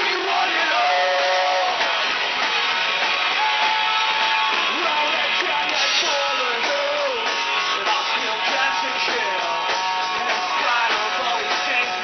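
Rock band playing live: electric guitars and drums, with a singer.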